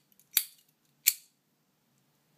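Austrian Imco Triplex trench lighter's metal cap and striking mechanism clicking twice, sharp and short, as it is worked by hand.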